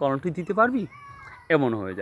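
A man talking, and in a short pause about a second in, a faint wavering animal call of under a second.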